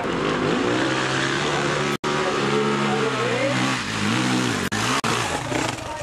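Dirt bike engine revving up and down, its pitch climbing and falling repeatedly, with the sound cutting out for an instant about two seconds in and twice near the five-second mark.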